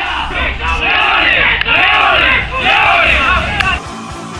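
A group of boys shouting together in a team huddle, a loud group chant of many overlapping voices that breaks off briefly twice and stops shortly before the end.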